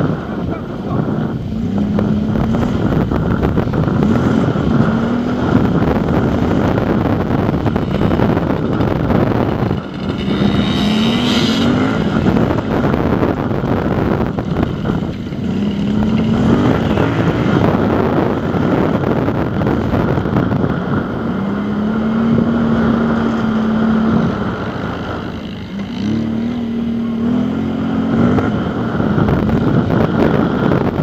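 Engine of the off-road vehicle carrying the camera, revving and climbing in pitch in short steps and dropping back several times as it accelerates and shifts over rough ground, with heavy wind rumble on the microphone.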